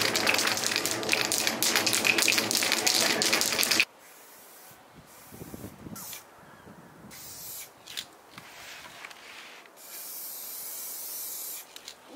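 Aerosol spray-paint cans being shaken, a loud fast rattle, for the first four seconds, cutting off sharply. Then quieter hisses of spray paint being sprayed onto cardboard, the longest steady hiss near the end.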